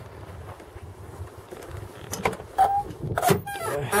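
Car door being opened: low handling noise, then a few sharp clicks and knocks near the end as the latch releases and the door swings open.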